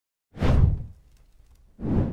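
Two whoosh sound effects of a TV news logo animation: a loud, deep one about half a second in that fades away, and a shorter one near the end.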